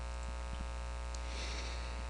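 Steady electrical mains hum in the recording, a low buzz with a ladder of higher overtones that holds unchanged throughout.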